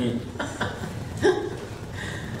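A man chuckling to himself in short breathy bursts, one about half a second in and a louder one about a second and a quarter in.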